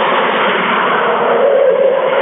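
A steady, loud rushing noise with no distinct ball strikes standing out. A faint brighter tone swells briefly about one and a half seconds in.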